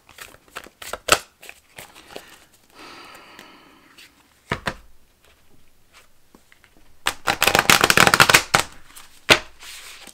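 An oracle card deck being shuffled by hand. Scattered flicks and taps of cards come first, then a dense, rapid crackle of cards lasting about two seconds near the end.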